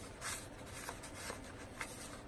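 Faint rustling of paper pages and card stock as a handmade junk journal is handled, with a brief, slightly louder rustle about a quarter second in and a couple of soft ticks.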